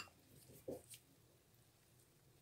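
Near silence: room tone, with one faint short sound about two-thirds of a second in.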